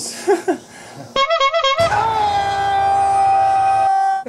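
Brief laughter, then a musical sting: a short wavering run of notes, then one long, steady high note held for about two seconds that cuts off suddenly.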